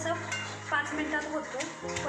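A pestle pounding and crushing green chillies and peanuts in a metal pan to make kharda, with knocks of the pestle against the pan and scraping of the coarse mixture. Background music plays throughout.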